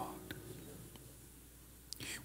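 A pause in a man's spoken prayer: his voice trails off at the start, then faint room tone with a low steady hum and a brief tick near the end.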